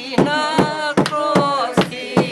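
A group of voices singing together, with sharp, regular beats about three a second keeping time under the song.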